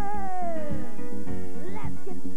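Live pop band music with a steady beat; a pitched lead line slides down over the first second, and a quick upward swoop follows near the end.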